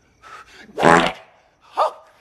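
A person's short non-word vocal sounds: a faint one, a loud one about a second in, and a shorter one near the end.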